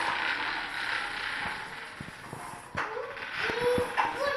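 A child's bicycle with training wheels rolling across a tiled floor: a steady rolling noise with creaking, and a few sharp clicks near the end.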